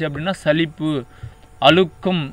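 A man's voice speaking in Tamil in short phrases, with a steady low mains hum underneath.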